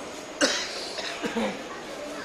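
A single sharp cough about half a second in, followed by a few fainter throat sounds.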